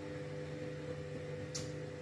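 Steady hum of several even tones from a running household appliance, with a brief soft hiss about one and a half seconds in.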